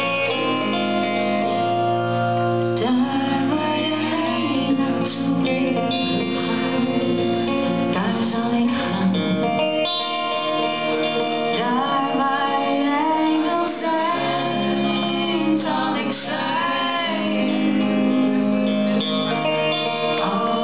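A woman singing a Dutch ballad into a microphone with a live band playing behind her, in a concert recording.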